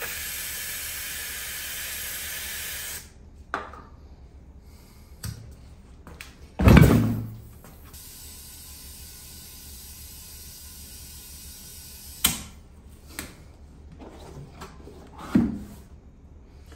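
Aerosol spray can hissing steadily for about three seconds as it is sprayed onto a tire bead. A loud thump follows near the middle, then a fainter steady hiss and a couple of short knocks.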